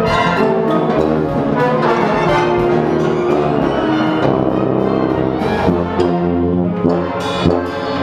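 Wind ensemble playing a loud, rhythmic passage of changing notes, with a JZ CC tuba close to the microphone mounted on it.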